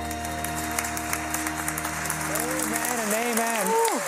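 The held closing chord of a gospel worship song fades out under applause. A voice speaks over it from past the middle.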